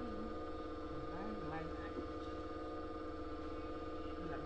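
A steady hum with several constant tones, under faint, indistinct voices.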